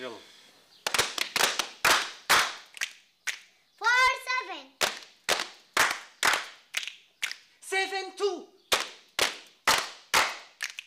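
A group of people clapping their hands together in a steady rhythm, about two claps a second, to keep time in a number-calling game. A voice calls out a pair of numbers twice over the claps, once about four seconds in and again near the end ("four, seven").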